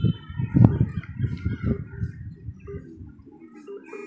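Irregular low rumbling bursts with a few faint higher calls over them. Near the end a steady electronic phone ringing tone sets in, the call to the smartphone lying in molten wax going through.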